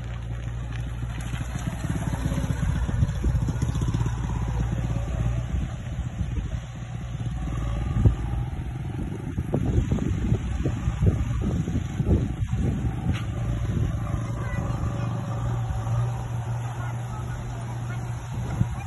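Motorcycle engine running as a motorcycle rides over a rough, rutted dirt road, with a continuous low rumble that swells between about 8 and 13 seconds in.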